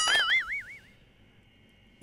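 A cartoon-style boing sound effect: a springy tone that wobbles up and down about four times and fades out within a second. Near silence follows.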